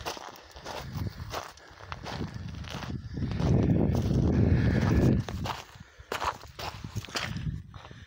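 Footsteps crunching on a wet trail of loose rounded stones and gravel, irregular as the walker moves along. A louder low rumble comes in about three seconds in and stops about two seconds later.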